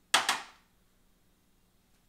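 A quick double clink, a small ceramic ramekin knocking against a dish, dying away within half a second.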